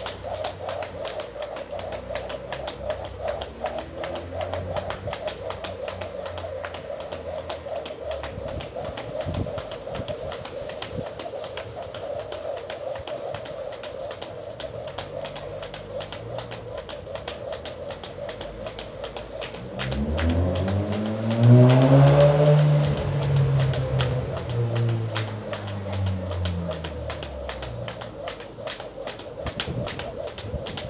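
Skipping rope striking the paving in a fast, steady rhythm of sharp ticks as someone jumps continuously. About twenty seconds in, a louder low sound whose pitch rises and then falls joins for several seconds.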